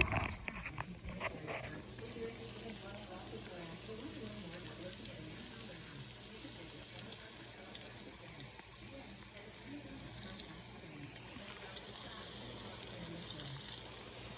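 Ripe plantain slices frying in oil in a skillet: a steady, soft sizzle of bubbling oil, with a few clicks in the first couple of seconds.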